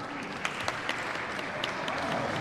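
Audience applauding, with a few single claps standing out from the steady patter.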